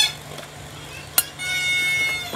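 A single sharp plastic click a little over a second in, as the smartphone holder clips onto the drone's remote control. It is followed by a steady high-pitched tone lasting under a second.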